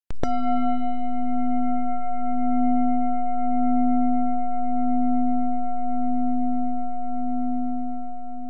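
A single struck bell tone, low with several ringing overtones, sustaining with a slight waver and beginning to fade near the end.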